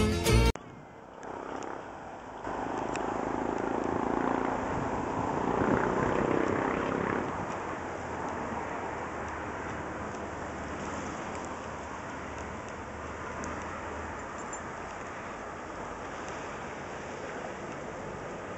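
Folk music with violin cuts off about half a second in, followed by steady outdoor background noise that swells for a few seconds before settling.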